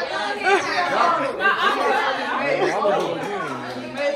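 Several people talking over one another: indistinct chatter with no clear single voice.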